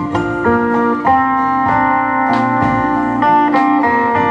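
Live country-folk band playing an instrumental break, with no singing. A lap steel guitar leads with sustained, sliding notes over acoustic guitar, fiddle, double bass and drums, with occasional cymbal strikes.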